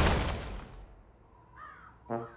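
The crash of collapsing buildings dies away over the first second into quiet. Then a single short crow caw comes about a second and a half in.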